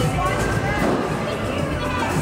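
A person's voice talking briefly over continuous background music.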